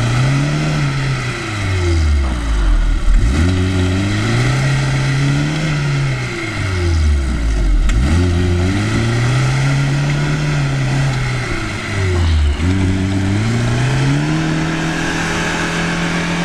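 Lada Niva 4x4's four-cylinder petrol engine revving hard as it climbs a steep sand slope with its wheels spinning for grip. The revs rise and drop about three times, then hold high and steady near the end.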